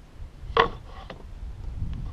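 Wooden boards being handled: one sharp knock of a board against the stack about half a second in, then lighter knocks and rubbing as it is lifted off and set aside.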